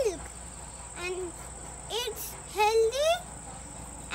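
A young child's high voice in a few short utterances, over a steady high-pitched drone of insects.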